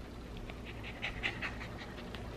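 Cockapoo puppy panting softly in quick short breaths, starting about a third of a second in.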